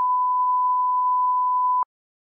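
Broadcast line-up test tone: the steady 1 kHz reference tone that goes with colour bars, one unbroken pitch that cuts off suddenly near the end.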